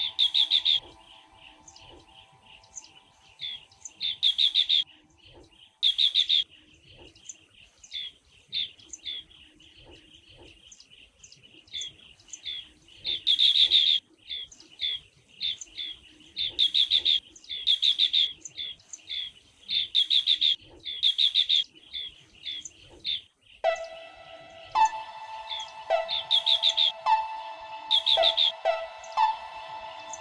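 Asian green bee-eaters calling: loud, rapid trilled bursts of under a second, repeated every few seconds, with softer chirps between them. A sustained music tone fades out in the first few seconds, and a music track comes in sharply about three-quarters of the way through, under the calls.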